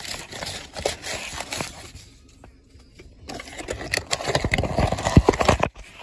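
Hands working a toy's cardboard box and plastic tray: rustling, crinkling and clicking, quieter for about a second midway, then a run of louder clicks and knocks as the figure is tugged out of the packaging near the end.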